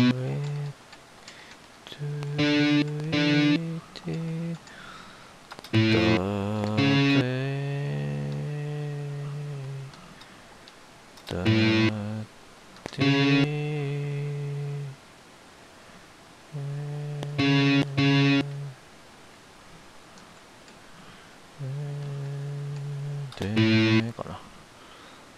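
Electric guitar playing a short phrase in octaves, about six times over, with pauses of a few seconds between: each phrase is a few quick picked notes ending on a held note.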